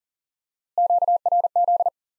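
Morse code tone at 40 wpm spelling QRZ: a single steady-pitched beep keyed in three quick groups of dits and dahs, starting about three quarters of a second in.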